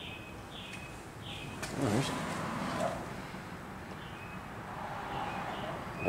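A bird chirping over and over, short falling chirps repeating less than a second apart, with a brief rustle about two seconds in.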